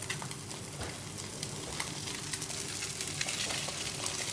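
Sea bass fillet frying in olive oil in a non-stick pan: a steady sizzle with scattered small crackles of spitting oil.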